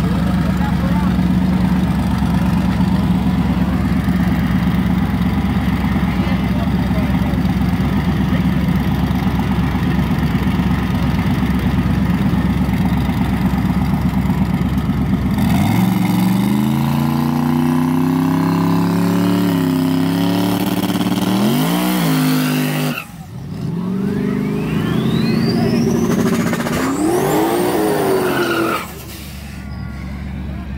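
Drag-racing cars' engines running loudly with a rough, steady rumble at the start line, then revving hard with the pitch rising and falling. After a sudden break a little past the middle, a car accelerates away with a long rising high-pitched whine and tire squeal, leaving tire smoke.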